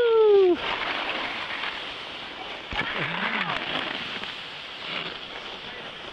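A long, drawn-out voice call that falls in pitch and ends about half a second in, then the steady rushing hiss of skiing downhill: skis sliding on snow and wind across the microphone.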